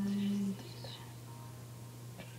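A girl's hummed note, held steady, ends about half a second in, followed by faint breathy whispering, with a steady low hum underneath.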